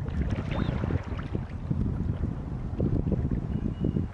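Wind buffeting the microphone: a loud, rough low rumble that goes on throughout, with a faint high chirp about half a second in.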